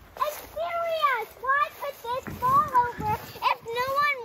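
A young child's high-pitched voice calling out in a string of short cries that rise and fall in pitch, without clear words.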